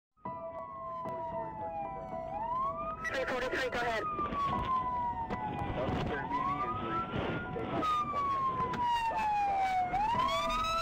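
Emergency vehicle siren wailing. Its pitch falls slowly, then sweeps quickly back up, repeating every three seconds or so, with a steady tone held underneath. Voices are heard briefly a few seconds in.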